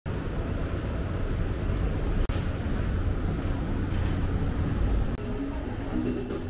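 Street traffic ambience in Manhattan: a steady low rumble of vehicles on a busy street, briefly cut about two seconds in and a little quieter near the end.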